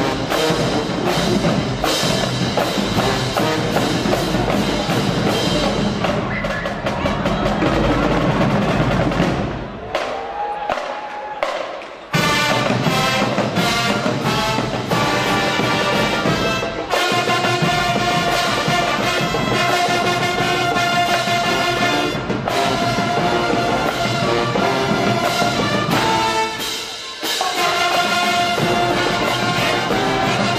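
High school marching band playing: drums and brass together, with a short quieter break about ten seconds in, after which the horns come back in on held notes over the drumline.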